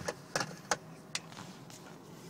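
Five or so short, light clicks and taps spread over two seconds: handling noise from a handheld camera being moved around inside a car.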